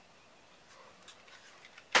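Mostly quiet, with faint rustles and light clicks as a Kydex sheath is handled, then a sharper click near the end.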